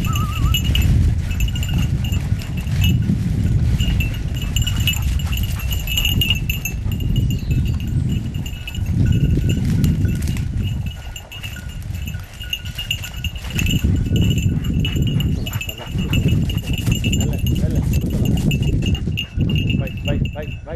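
A hunting dog's collar bell jingling steadily and unevenly as the dog works through the cover. It sounds over a loud low rumble that dips briefly about halfway through.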